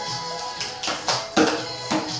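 Music playing from a television, with a run of sharp percussive hits in the second half, the loudest about halfway through.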